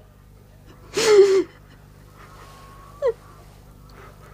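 A person's loud, voiced gasp about a second in, then a short falling whimper near the end.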